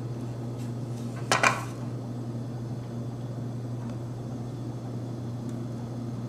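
A short metallic clink and rattle of the mount's metal bracket and tripod-head parts being handled, a little over a second in, over a steady hum.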